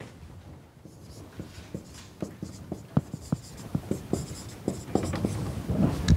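Marker writing on a whiteboard: a run of short taps and squeaks as the letters are written, growing denser and louder toward the end.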